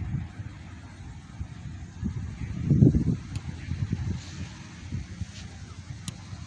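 Wind buffeting the microphone: an uneven low rumble that swells in a gust about three seconds in.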